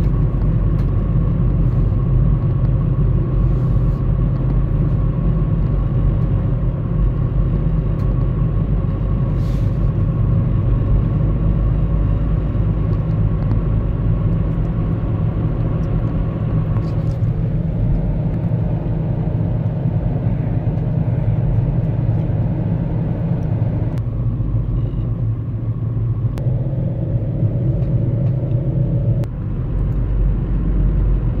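Car driving at speed on an open road, heard from inside the cabin: a steady low rumble of engine and tyres. A faint whine fades out about halfway through, and a lower one comes in briefly near the end.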